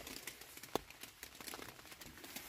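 Faint rustling and crinkling of fabric and camping gear inside a tent, with a scatter of light clicks; one sharper click comes a little under a second in.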